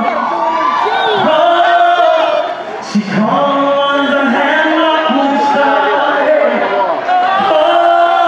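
A man singing an R&B song live into a microphone, with long held notes that slide in pitch, over the voices of a crowd.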